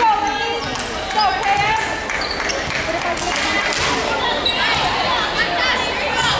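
Players and spectators calling out in a gymnasium, with the thuds of a ball bouncing on the hardwood floor now and then.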